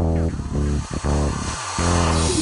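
Background music with a steady, pulsing beat.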